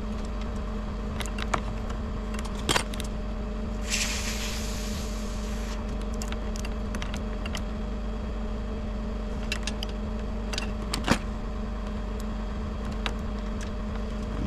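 Bucket truck engine running steadily at idle, with a few sharp clicks from cable handling (the loudest about eleven seconds in) and a brief hiss about four seconds in.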